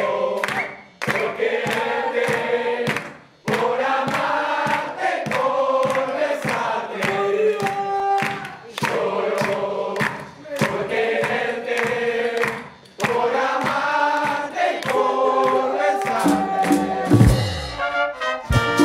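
A band playing a song with several voices singing together over a steady percussion beat, the singing pausing briefly between phrases. Near the end a low tone slides down in pitch.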